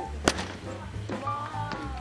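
A bat strikes a ball off a batting tee: one sharp crack about a quarter second in, over steady background music.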